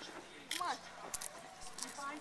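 Faint, brief speech from a voice nearby, about half a second in, with a couple of soft clicks just after the middle, over low background noise.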